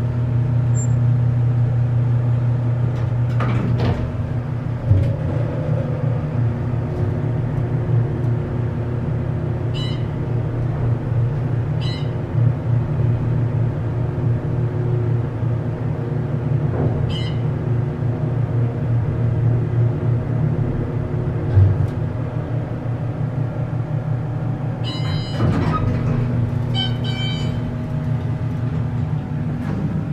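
Hydraulic passenger elevator on a long run, giving a steady low hum inside the closed car. A few faint high clicks come through along the way. Near the end there is a short cluster of higher tones and clicks.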